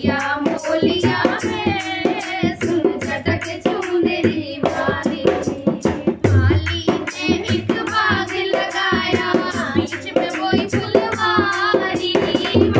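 Women singing a Hindi folk bhajan together, clapping their hands in a steady rhythm.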